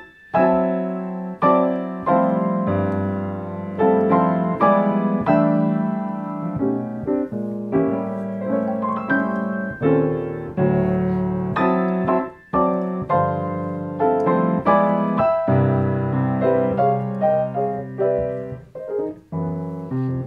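Grand piano played in block-chord style: full chords in the left hand under a right-hand melody in octaves with a note filled in between. The chords are struck one after another, each ringing and fading before the next.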